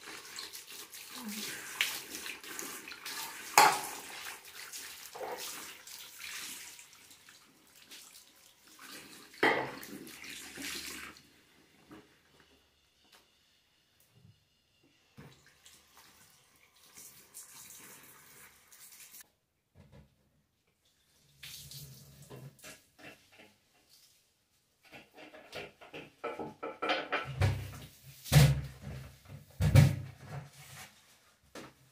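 A bathroom sink tap runs onto a ceramic basin as it is scrubbed with a sponge and rinsed, with a few sharp knocks against the sink. Near the end, scrubbing clatter and low thumps come from wiping the toilet.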